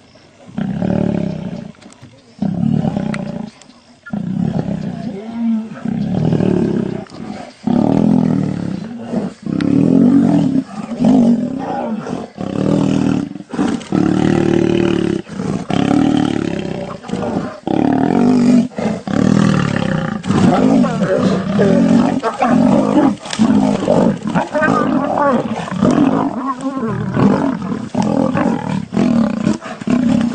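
Male lions fighting, roaring and snarling: short, loud calls in quick succession, with short gaps in the first few seconds and almost unbroken after that.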